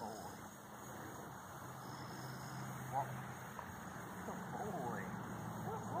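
Faint outdoor background: a low steady hum with a few faint short chirps over it.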